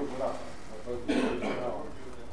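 A man clearing his throat once about a second in, a harsh burst, after a short vocal sound near the start.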